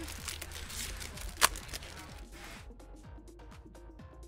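A trading-card booster pack's wrapper crinkling as it is torn open, with one sharp, loud crack about one and a half seconds in. Quiet background music with a light, even beat carries on underneath.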